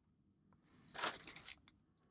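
Thin plastic kit bag crinkling as a bagged sprue of clear plastic model parts is picked up and handled, a rustle lasting about a second in the middle.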